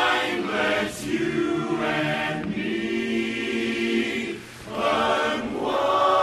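Men's barbershop chorus singing a cappella, holding full chords; the sound dips briefly a little past four seconds, then swells into a louder chord near the end.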